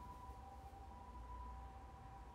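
Near quiet: a faint, steady, high two-note whine that holds one pitch throughout, over a low hum.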